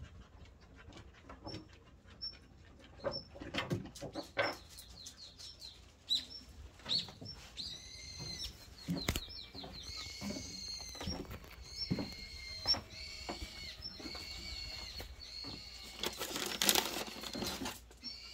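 A dog gnawing a hard chew: irregular sharp clicks and crunches. About six seconds in, repeated high, thin chirping calls join in and run on. Near the end there is a louder burst of rustling noise.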